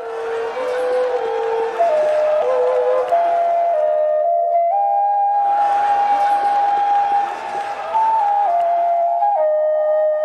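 Vietnamese bamboo transverse flute (sáo) playing a slow melody of held notes. It climbs step by step to a long high note in the middle, then steps back down near the end.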